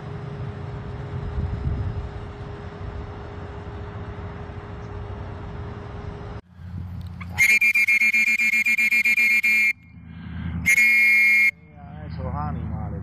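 Wind rumbling on the microphone with a faint steady hum for about six seconds. Then, after a sudden cut, a loud horn-like tone sounds in rapid pulses for about two seconds, and again briefly a second later.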